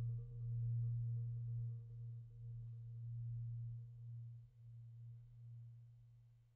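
Concert marimba sustaining a single low note, played softly with yarn mallets. The note swells and ebbs several times, then fades away near the end.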